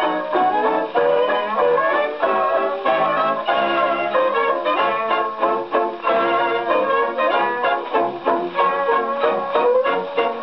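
A 1930s American dance band playing a lively instrumental passage, heard from a Brunswick 78 rpm record on a gramophone. The sound has no high treble, as is usual for an old shellac disc.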